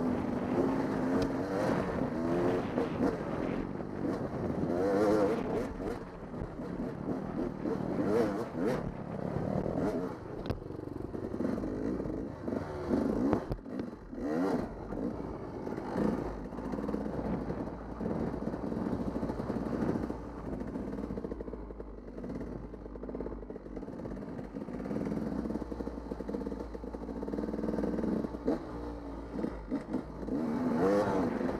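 Dirt bike engine running while ridden on a trail, the revs rising and falling with the throttle, with scattered knocks and rattles.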